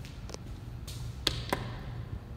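Two sharp clicks about a quarter second apart, about a second and a quarter in, from an elevator hall call button being pressed, over a low steady background rumble.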